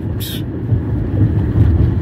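Steady low rumble of a car heard from inside the cabin, with a brief hiss about a quarter second in.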